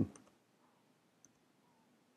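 A few faint, scattered computer keyboard key clicks as a short command is typed and entered.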